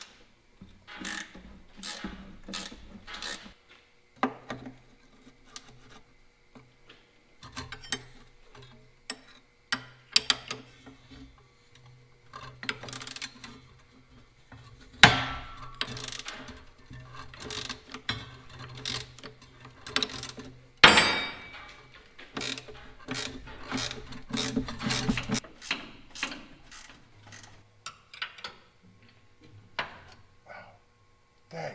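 Hand ratchet wrench clicking in short runs while rusted bed-mounting bolts are worked loose from a truck frame, with a few louder metal clanks. A low steady hum runs through the middle.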